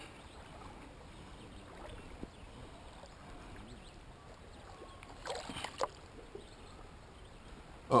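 Faint, steady wash of shallow creek water, with light sloshing as the water is stirred by wading and a small hand net among the rocks.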